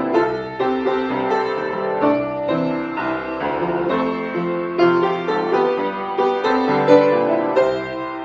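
Solo upright piano played with both hands: a melody over sustained chords, with new notes struck every fraction of a second.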